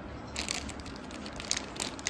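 A toddler's hands crinkling and crackling a plastic snack wrapper, in short bursts about a third of a second in and again near the end.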